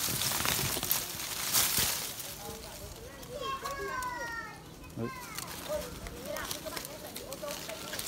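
Leaves and twigs of a lychee tree rustling and crackling as hands push through the branches, with a few sharp snaps in the first two seconds. A high-pitched bending call is heard briefly around the middle.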